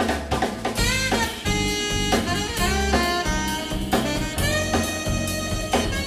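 Live jazz band playing: saxophone over piano, guitar, bass line and drum kit, with a melody line that bends in pitch and steady drum hits.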